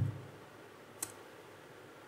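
A single computer mouse click about a second in, over faint room tone.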